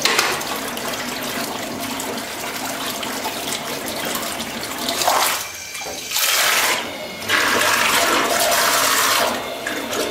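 Small electric underwater thruster churning water in a stainless steel kitchen sink: a steady rush of water that dips briefly about five seconds in, then returns louder for the last few seconds.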